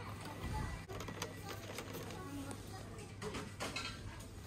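Low-level shop background: a steady low hum with faint voices, and a few light clicks and rustles as cardboard-backed metal cookie-cutter packs are handled.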